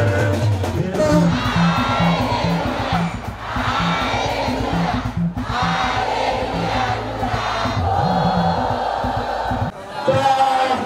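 A crowd singing and calling out over music with a regular low beat, about three beats a second. The sound dips sharply just before the end.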